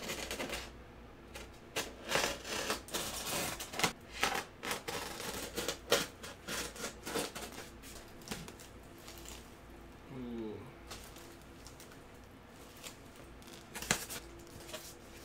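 Packing tape being cut and pulled off a styrofoam shipping cooler: a dense run of sharp clicks, crackles and scrapes, quieter after about eight seconds as the foam lid is worked loose.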